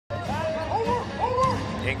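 Basketball broadcast sound cutting in suddenly: a steady arena crowd murmur under a TV commentator's voice.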